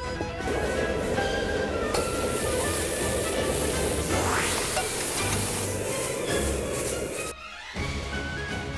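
Background music over the sizzle of food frying in hot oil in a wok. The sizzle comes in as a bright hiss about two seconds in, and everything cuts off briefly near the end.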